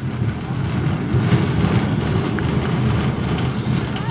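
Large slatted steel gate being pushed open, giving a steady low rumble with a fine rattle as it moves.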